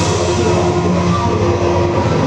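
Loud rock music carried by held, droning tones, with little or no cymbal wash in it.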